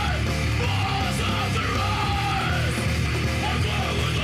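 Heavy metal song with a singer yelling over a loud, dense band backing, in long drawn-out phrases.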